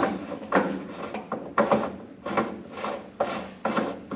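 Irregular metal clicks and knocks, about a dozen in four seconds, from tools and a rusted hydraulic hose fitting being handled while the fitting is put back together.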